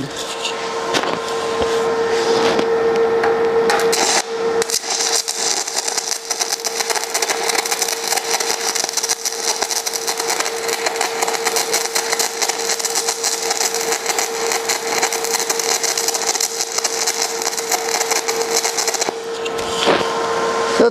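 Stick-welding arc from a 7018 rod on half-inch steel plate, the welder set to 150 amps, crackling steadily for almost the whole stretch and stopping about a second before the end. The arc starts easily and burns nice and clean.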